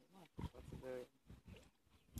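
A person's short wordless vocal sounds, with a low thump about half a second in.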